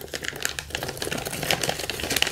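Thin clear plastic bag crinkling in the hands as a phantom power unit is slid out of it: a dense, continuous run of small crackles.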